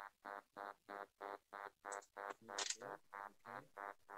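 A faint electronic tone pulsing evenly, about four short beeps a second.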